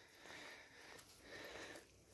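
Near silence: faint outdoor background with two soft, barely audible swells of noise.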